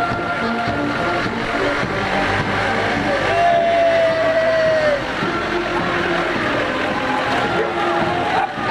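A Land Rover engine running at walking pace as it passes close by towing a float trailer, getting louder about halfway through, over music and crowd chatter.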